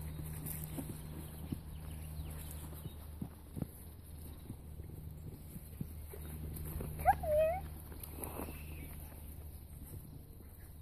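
Standard poodle puppies scampering on grass with light taps and rustles over a steady low hum. About seven seconds in there is one short, high animal call with a rising start, then a fainter call about a second later.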